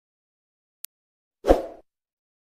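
Sound effects of an animated YouTube subscribe-button graphic: a tiny click a little under a second in, then a short, louder pop with a low thump about a second and a half in as the subscribe button appears.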